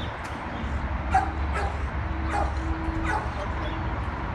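A dog barking: about five short, sharp barks spaced unevenly, over a steady low rumble.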